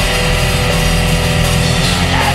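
Heavy metal recording playing loud and dense: distorted guitars over a drum kit, without a break.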